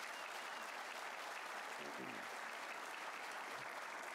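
Auditorium audience applauding steadily.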